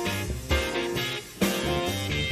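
A small band of double bass, piano, electric guitar and drum kit playing live. The sound thins out briefly a little over a second in, then the band comes back in with a sharp loud accent.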